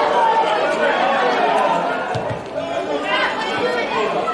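Several overlapping voices chattering and calling out at a football match, none clearly intelligible, with a couple of short dull thumps about two and three seconds in.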